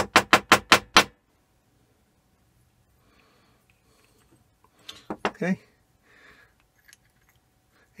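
A quick run of six sharp clicks within about a second as the parts of a dismantled ball valve are handled, then only faint small handling noises.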